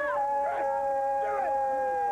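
Several overlapping long howls, each held on a steady pitch that sags slightly, one taking over from another about a quarter-second in.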